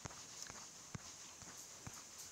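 A few faint, sharp clicks at uneven intervals over a low steady hiss.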